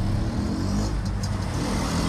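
Motor vehicle engine running at low speed, heard from on board: a steady low hum whose pitch wanders slightly.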